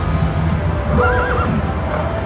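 Pharaoh's Fortune slot machine playing a short horse-whinny sound effect about a second in, marking a winning line of chariot symbols, over the game's music.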